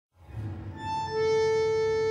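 Opening of a tango recording: music fades in softly, and from about a second in a free-reed instrument holds one long steady note.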